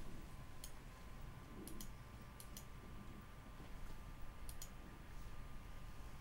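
Computer mouse clicking, about four times, mostly in quick double clicks, over a faint steady hum.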